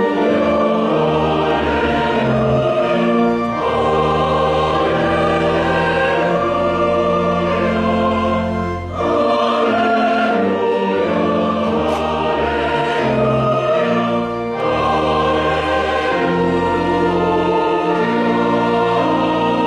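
Mixed choir of men and women singing long held chords, with brief breaks between phrases about nine and fourteen and a half seconds in.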